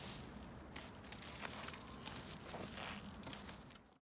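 Hands pressing and rubbing a rolled, wet raw sheep fleece on bubble wrap during wet felting: irregular soft rustles and crackles, fading out near the end.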